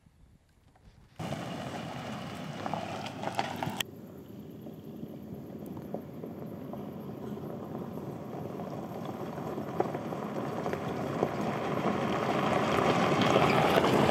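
Toyota FJ Cruiser driving along a gravel track toward the listener: a steady rush of tyres on gravel and engine that grows gradually louder over the last ten seconds, after a second of near quiet at the start.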